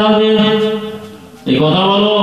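A man's voice chanting a melodic line into a microphone. He holds one long note that fades out about a second and a half in, then starts a new phrase.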